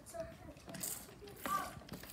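Hands splashing and rummaging in a small plastic toy bathtub of water, in a few short bursts of noise.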